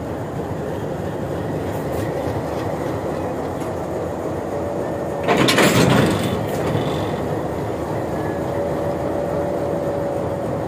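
Diesel locomotive's engine running steadily as it eases back onto a freight wagon, with one loud clank just under a second long about five and a half seconds in as the couplers meet.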